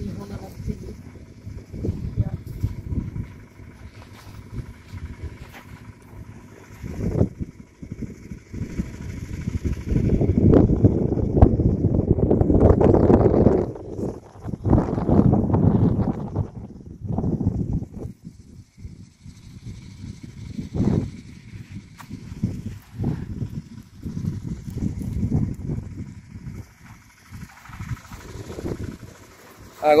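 Indistinct, muffled voices over an uneven low rumble, with a few brief knocks; loudest for several seconds in the middle.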